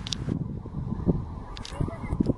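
Wind buffeting a handheld phone's microphone: an uneven low rumble with a few light clicks.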